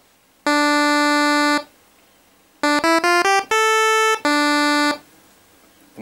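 Nord Stage 3 Compact synth section playing a buzzy Pulse 10 pulse-wave patch, effects off and the pulse modulation not yet turned up, so each note holds a steady tone. A short phrase: one held note, a pause, a quick run of short notes climbing in pitch, a longer higher note, then the first note again.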